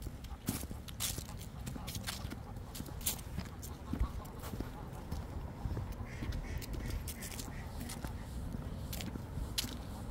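Geese calling on the road, over a scatter of short, sharp footstep clicks on the pavement.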